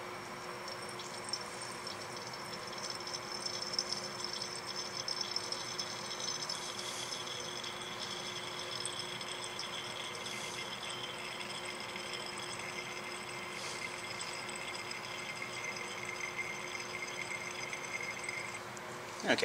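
Sodium hydroxide solution running in a thin stream from an open burette into an Erlenmeyer flask of vinegar: a faint, steady trickle of titrant run in quickly to bring the titration near its endpoint. Under it is a steady room hum with a few faint ticks.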